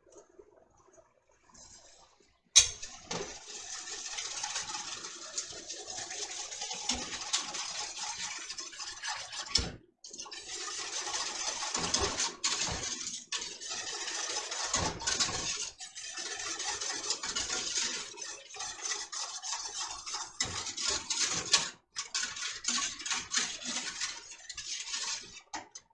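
A wooden-handled spoon stirring sugar into crab apple juice in a stainless steel saucepan: continuous gritty scraping and swishing against the pan bottom, as the undissolved sugar grinds under the spoon. It starts with a sharp knock of the spoon on the pan about two and a half seconds in and stops briefly twice along the way.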